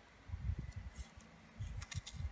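Hands handling a roll of washi tape on the desk: soft low bumps, twice, and a few short crisp crackles as tape is pulled from the roll.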